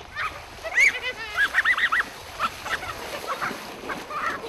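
Playful shrieks and squealing laughter from people splashing each other in shallow lake water, with splashing beneath. A rising-and-falling squeal comes about a second in, then a quick run of four short squeals, then scattered cries.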